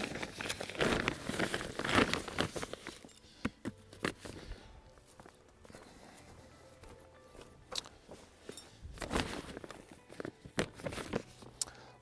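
Footsteps in rubber boots crunching over dry straw mulch and soil, irregular steps that are busiest in the first few seconds and again near the end, with a quieter stretch in the middle.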